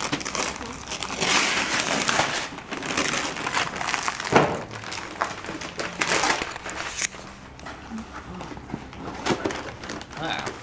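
Gift wrapping paper being torn and crinkled in a series of irregular rips, with a sharper snap about four seconds in.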